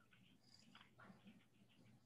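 Near silence: faint room tone with a low hum and a few soft, brief clicks.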